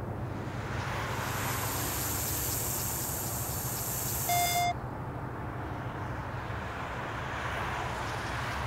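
Handheld breathalyzer beeping once, briefly, about four seconds in, just as a high hiss stops, over steady outdoor background noise with a low hum.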